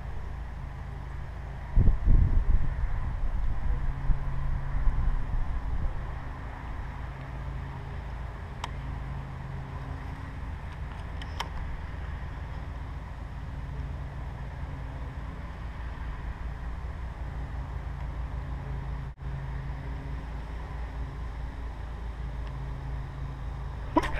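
Wind rumbling on the microphone, gusting louder a couple of seconds in, over a faint steady engine-like hum; two faint clicks in the middle.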